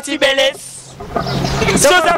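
A motor vehicle's engine running close by, swelling loud for under a second with a steady low hum and a short hiss at its end, after a brief burst of a man's voice.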